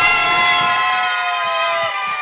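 Train horn sounding one long, loud blast, several tones at once, which starts suddenly and sags slightly in pitch near the end.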